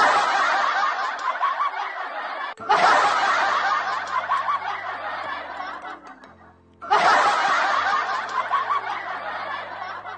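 Crowd laughter and cheering, heard as three bursts in a row, each starting suddenly and fading away, over a faint low hum.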